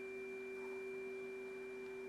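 A tuning fork's tone held soft and steady, with a faint high overtone above the main note.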